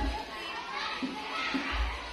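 Children's voices chattering and talking, with a short knock at the very start.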